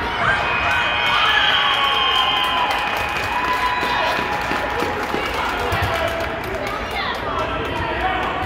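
Children shouting and calling out during an indoor soccer game in a large gym, with scattered short knocks of footfalls and ball kicks on the hardwood floor.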